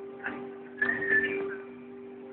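Slow electric guitar music playing from a television's speakers: a held low chord under a high lead note that bends up and back down about a second in.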